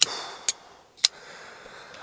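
A Custom Knife Factory folding knife being worked in the hand: three sharp clicks of the blade opening and locking or snapping shut, about half a second apart.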